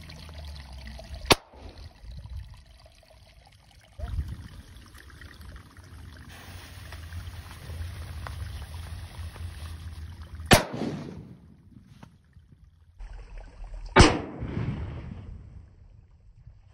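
Small firecrackers exploding under an upturned car piston: three sharp bangs, about a second in, about ten seconds in and about fourteen seconds in, the last the loudest.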